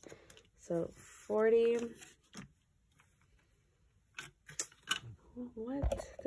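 Paper envelope and banknotes being handled, with several sharp, crisp crackles about four to five seconds in. A woman's voice is heard briefly at the start and again near the end.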